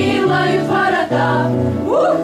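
Children's choir singing in several parts, holding notes that change in steps, with a short upward slide near the end.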